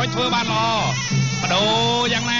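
Traditional Kun Khmer fight music: a sralai reed oboe plays a wavering, swooping melody over a steady drone, with a voice over it.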